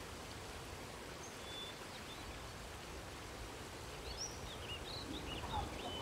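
Outdoor ambience: a steady background hiss with small birds chirping. A few faint chirps come early, then a busier run of chirps from about four seconds in.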